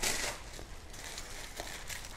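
Soft rustling and crinkling of shoe packaging being handled, loudest in the first half second, then quieter with a few faint light clicks.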